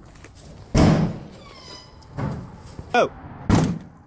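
Two loud bangs of a door, about three seconds apart, the first followed by a brief ringing; a softer knock falls between them.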